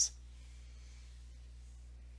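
A faint steady low electrical hum with room tone, after the hiss of the last spoken word right at the start.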